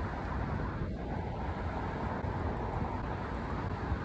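Steady wind rushing over a phone's microphone as it is carried along at skating speed, mixed with the rumble of inline skate wheels rolling on the asphalt path.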